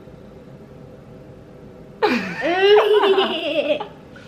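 Quiet room tone for about two seconds, then a woman and a young boy laughing together in a short burst that stops just before the end.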